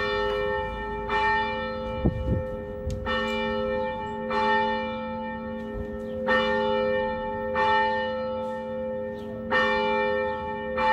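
A church bell tolling in an uneven rhythm, struck about every one to two seconds, each strike ringing on into the next. There is a brief low thud about two seconds in.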